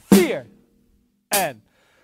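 Acoustic drum kit played slowly, eighth note by eighth note: two strokes about a second and a quarter apart, each a hi-hat hit together with a drum that rings briefly.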